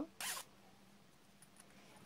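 A zipper's slider run briefly along its teeth: one short zip a fraction of a second in.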